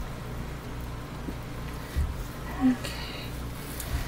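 Silicone spatula stirring thick soap batter in a plastic bowl, with a steady low hum underneath and a couple of dull bumps, one about halfway through and one near the end.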